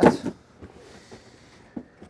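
An empty cardboard shipping box tossed onto the floor: one sharp thump at the start, then a faint hiss and a small click near the end.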